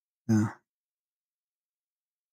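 Speech only: a man says a single short "yeah" near the start, followed by complete silence.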